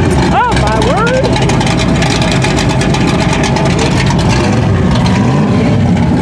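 1969 Dodge Charger's engine idling with a steady low rumble, heard close to the car's rear.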